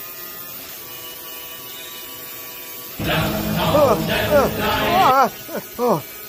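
Laser engraver buzzing steadily as it marks a card. About three seconds in, a man's wordless vocal sounds with swooping pitch come in over it for about two seconds, followed by two short falling sounds near the end.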